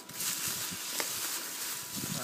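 Plastic bubble wrap crinkling and rustling as it is handled, with one sharper click about a second in.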